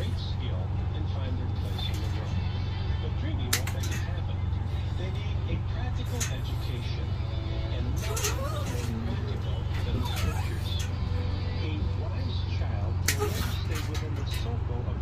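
A steady low machine hum, with a few sharp clicks of dog nail clippers cutting nails, about three and a half, eight and thirteen seconds in.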